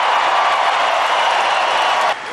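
A large arena crowd applauding and cheering, as a steady dense noise.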